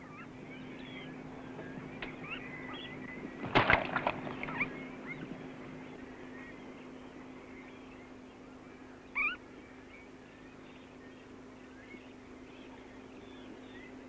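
Birds calling at a distance: many short, high chirps throughout, with a louder call about three and a half seconds in and another near nine seconds, over a faint steady hum.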